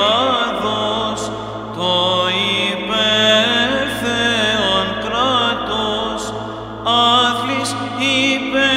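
Greek Orthodox Byzantine chant of a hymn: a chanter's voice sings a slow, ornamented melodic line over a steady low held drone (the ison).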